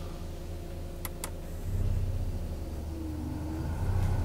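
Audi A3 1.8 20v inline-four idling, heard from inside the cabin. About a second in there are two quick switch clicks. Soon after, the engine note grows louder and heavier as the added load takes the idle down slightly and smoothly, a small dip that is much gentler than before.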